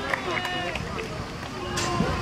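Several high-pitched children's voices calling and shouting over one another, with a single sharp knock near the end.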